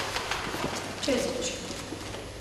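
Newspaper being handled: its pages rustling and crackling as they are turned and folded. A brief vocal sound comes just after a second in.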